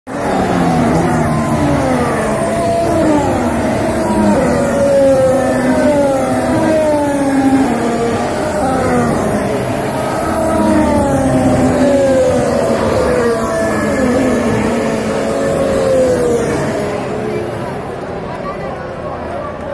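Formula 1 cars' turbocharged V6 engines at high revs, several running at once on the circuit, their notes falling in pitch one after another as they go by or brake.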